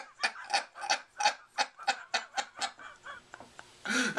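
A man laughing uncontrollably in a rapid string of short, breathless gasps, about five a second. The laugh tails off into fainter, wheezing catches for the last second or so.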